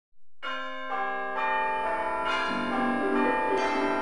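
Bells ringing a sequence of notes, a new note about every half second, each ringing on under the next, as the opening of the music.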